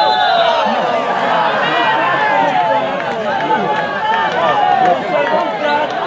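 Many men's voices shouting and calling over one another at once, a loud, steady jumble of overlapping voices with no single speaker standing out.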